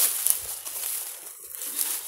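Walking through tall meadow grass: feet and legs brushing and rustling through the vegetation, loudest at the start and easing off.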